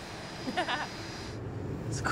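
Low, steady hum of a jet aircraft heard from inside the cabin, coming in about one and a half seconds in after a brief voice fragment.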